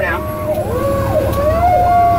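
Fire apparatus sirens heard from inside the cab: an electronic siren sweeping up and down in a repeating cycle, with a steadier tone slowly climbing in pitch from the mechanical Federal Q siren winding up, over the truck's low engine rumble.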